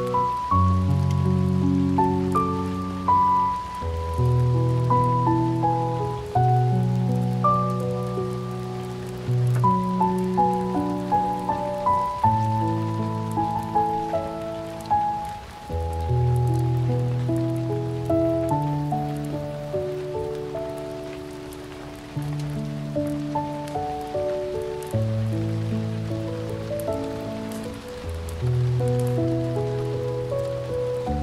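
Slow, gentle solo piano music, single notes and low chords ringing on, over a steady patter of rain.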